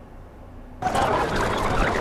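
Faint room tone, then just under a second in the soundtrack of a video played on the computer cuts in loudly: a noisy, warbling rush of sound as the footage runs back to the start.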